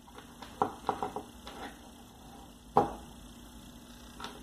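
Small metal motor parts (bushing, spacer washer) clicking against each other and the tabletop as they are handled: a few light clicks around a second in, and a sharper single click near three seconds in.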